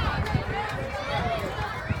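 Indistinct voices of people talking, with wind rumbling on the microphone.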